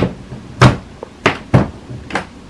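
Four short, sharp knocks and clicks of handling as the lightstrip's power adapter is plugged into a power strip.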